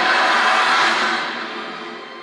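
A film trailer's soundtrack playing through a TV's speakers: a loud rush of noise, sound effect and music together, that swells and then fades away over the second half as the trailer ends.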